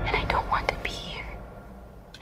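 A short whispered voice in the film trailer's soundtrack, over a low rumble of the score that fades away.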